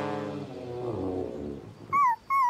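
Cartoon puppy's disappointed vocal reaction: a low groan that falls in pitch, in two drawn-out parts.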